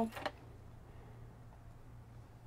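Near silence: faint room tone with a steady low hum and no distinct event.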